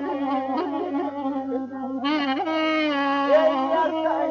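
Instrumental passage of Azerbaijani ashiq music led by a woodwind: quick ornamented phrases in the first half, then a long held note from about halfway through.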